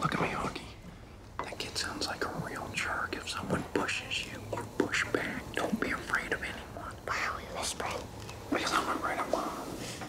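A man whispering, his words too low to make out.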